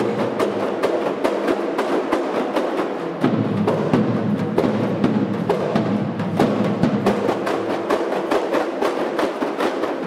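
Kompang ensemble, Malay hand-held frame drums struck with the palm, playing a fast, steady interlocking rhythm of many strokes a second.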